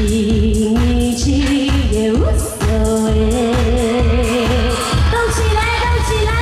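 A woman sings a Chinese pop song into a microphone over loud backing music with a steady drum beat, holding long notes.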